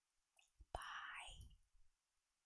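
A woman's short breathy whisper or exhale, starting with a sharp click about three-quarters of a second in.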